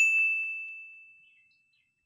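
A single bright ding, the sound effect of a pop-up 'Like' button animation, struck once and ringing out as one steady high tone that fades away over about a second and a half.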